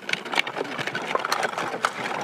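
Hard plastic wheels of a child's ride-on toy tractor rolling over gravel and litter on a dirt road: a steady, fast rattling clatter.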